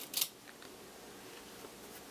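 A brief rustle of cotton fabric pieces being handled and lined up, just after the start, then faint room tone.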